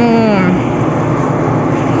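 Steady rushing noise of heavy rain on a warehouse store's roof, over the store's low hum; a woman's drawn-out voice trails off in the first half-second.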